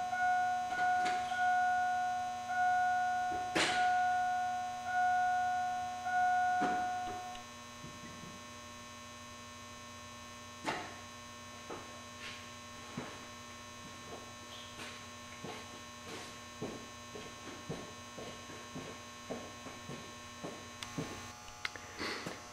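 An electronic warning chime sounds in short decaying tones, about one a second, and stops about seven seconds in. A sharp click comes about four seconds in. After the chime stops, faint scattered clicks and ticks sit over a steady electrical hum.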